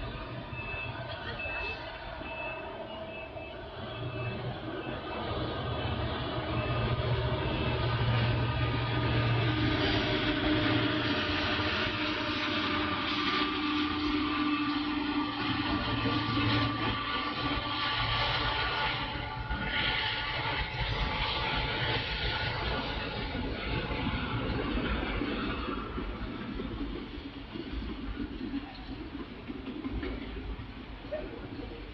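Long freight train of autorack cars rolling past, with steady wheel and rail noise. A mid-train diesel locomotive adds a low engine drone that builds through the middle and eases toward the end.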